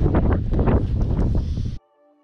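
Wind buffeting the camera microphone, a loud rough rumble that cuts off suddenly near the end, where soft background music takes over.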